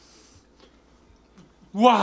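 A quiet stretch, then near the end a short, loud vocal exclamation that rises and falls in pitch.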